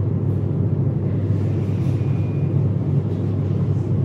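Steady low hum of room background noise.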